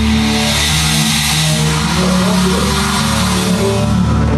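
Instrumental rock band playing live: electric guitar and bass hold sustained notes under a bright, steady wash of noise.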